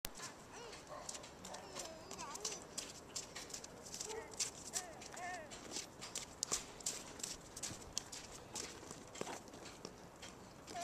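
Footsteps on a wet, slushy sidewalk, a steady run of small crunching and slapping steps, with a toddler's brief wordless vocal sounds rising and falling now and then.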